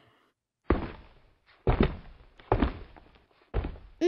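Footsteps going down a staircase: four heavy thuds about a second apart.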